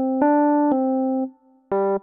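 Electronic keyboard with an electric-piano tone playing a simple melody one note at a time: Do, a step up to Ré, back to a longer Do, then a short lower note near the end.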